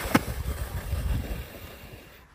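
Metal sled runners sliding over packed snow: a low rumbling scrape with a sharp knock just after the start, fading as the sled moves away.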